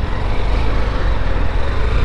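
Honda motorcycle engine running with a steady low rumble as the bike sets off.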